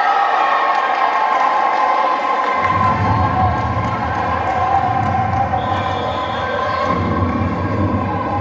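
Spectators cheering and shouting in a large sports hall as the bout ends, a continuous mass of voices. A low rumble joins in about two and a half seconds in.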